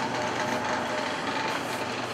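A steady mechanical hum with an even hiss behind it, holding level throughout and without clear knocks or voices.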